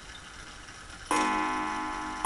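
Ansonia mantel clock striking the hour: one ringing strike about a second in, dying away slowly. It is the first of two strikes telling two o'clock, heard while the strike is being brought into step with the hands.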